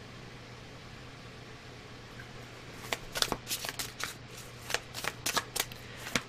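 A deck of tarot cards being shuffled by hand: about halfway in, a quick irregular run of card clicks and flicks begins, over a faint steady low hum.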